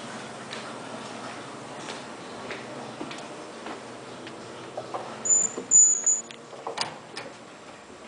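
Soft footsteps roughly every half second, then, about five seconds in, three short high electronic beeps in quick succession, followed by two sharp clicks.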